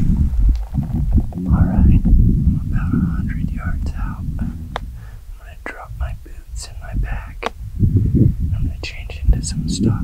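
A man whispering close to the microphone over a loud, uneven low rumble from wind on the microphone.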